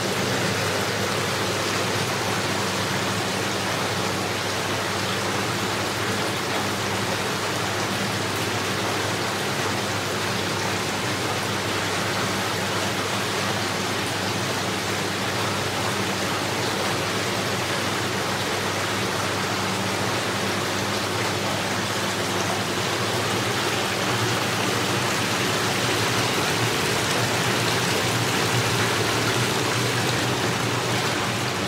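Spa bath jets churning and bubbling the water while the tap pours in, a steady rushing sound over a steady low hum, a little louder in the last few seconds.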